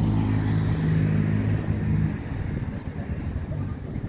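Road vehicle engine running with a steady low hum that fades away a little past halfway, leaving a rough low traffic rumble.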